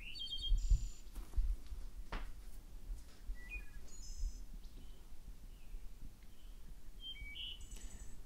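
Birds chirping faintly in the background: a few short high calls scattered through, over a low rumble, with a single sharp click about two seconds in.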